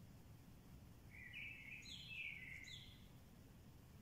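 Faint outdoor ambience with a steady low hum, and a bird calling from about a second in: three short, falling chirps over about two seconds.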